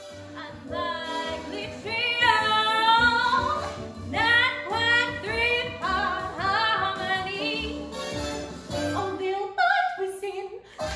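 A woman singing solo in a classical, operatic style, her held notes carrying a wide vibrato.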